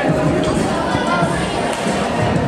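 Indistinct chatter of many voices talking over one another in a large sports hall.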